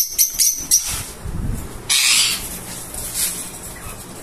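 Small caged parrots chirping in a quick run of short, high calls, about five a second, that stop about a second in. A low thump follows, then a brief harsh burst of noise about two seconds in.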